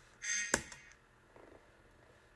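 DVD menu navigation sounds from a TV speaker: a short, bright electronic sound effect, then a single sharp click about half a second in as the chapter menu turns to the next page. After that only faint sound remains.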